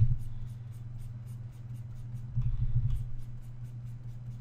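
Computer mouse being dragged in quick repeated strokes, a light scratching about six or seven times a second, over a steady low electrical hum. A low rumble comes at the start and again about two and a half seconds in.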